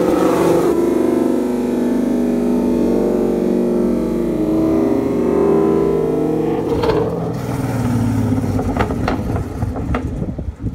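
Ford Mustang GT's 5.0 V8 engine running at low revs through its aftermarket exhaust as the car drives slowly past and away, a steady deep note that thins out after about seven seconds, with a few sharp ticks near the end.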